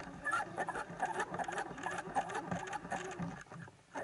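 Underwater sound heard through a camera housing: dense, irregular crackling clicks with jumbled water movement, easing off near the end.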